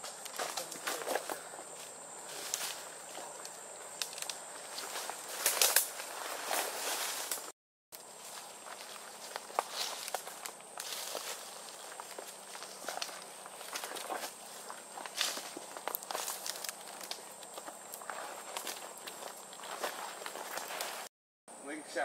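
Footsteps moving quickly through dry leaves and undergrowth, with irregular crackles and snaps of twigs. The sound cuts out briefly twice, about seven and a half seconds in and near the end.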